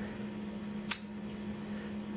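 A single short click about a second in, from fingers handling the stripped-down body of a Nikon D90 DSLR around its lens mount, over a steady low hum.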